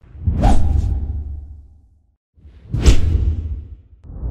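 Two whoosh transition sound effects over a deep rumble, about two and a half seconds apart. Each one swells quickly and then fades over a second or so. They accompany an animated logo end card.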